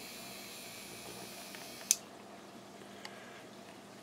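Quiet room tone with a faint steady hum, broken by one sharp click about two seconds in and a fainter tick a second later.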